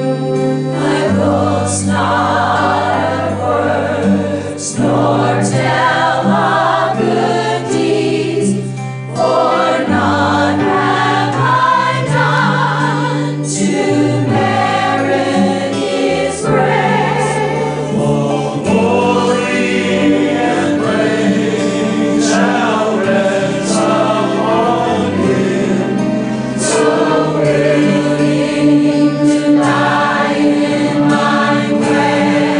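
Church choir singing a gospel hymn together with instrumental accompaniment, held low bass notes changing every couple of seconds beneath the voices.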